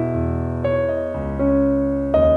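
Calm, slow piano music: single sustained notes struck every half second or so, each ringing on and slowly fading.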